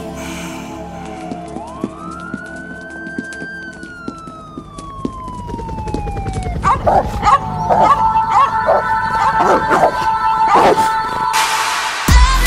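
A single siren wail that rises, holds and slowly falls, then dogs barking again and again, laid as sound effects over a quiet music bed.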